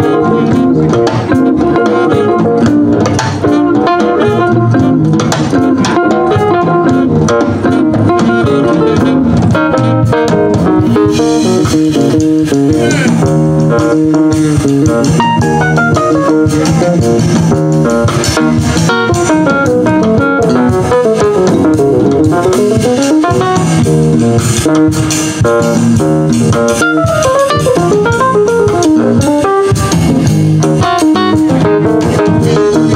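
A small jazz band playing live: electric guitar, bass guitar, keyboard and drum kit, continuous and loud, with some sliding, bending notes in the middle.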